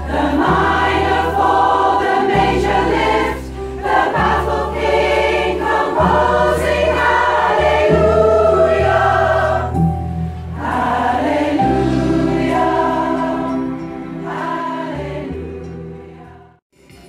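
A large, mostly women's rock choir singing in harmony, with steady low bass notes underneath that change with the chords.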